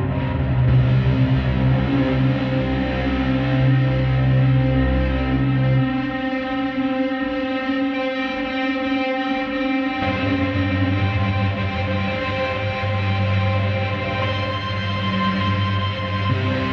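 Sampled guitar pad from 8Dio's Emotional Guitars Pads library, its 'aggressiveness' patch, played from a keyboard as sustained held chords. The chord changes about six seconds in and again about ten seconds in.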